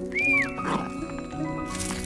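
Background music of held notes, with a small dog giving one short, high whine that rises and falls right at the start, followed by a couple of soft scuffling noises.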